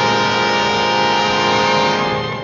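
Orchestral horror film score holding one loud, sustained chord.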